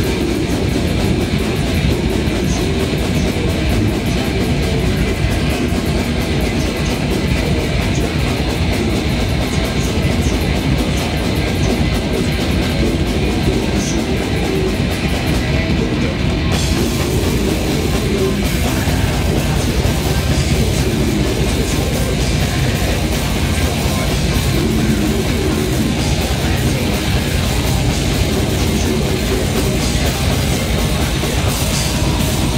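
Death metal band playing live: distorted electric guitars and bass over fast drumming, loud and unbroken.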